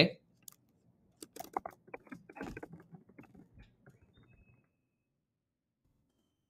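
Computer keyboard typing: an irregular run of key clicks starting about a second in, lasting about three seconds and growing fainter.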